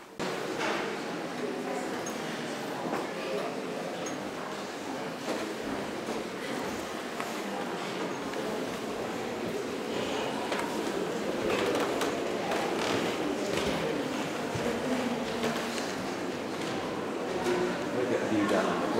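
Indistinct chatter of many visitors in a large, echoing hall, with no single voice standing out.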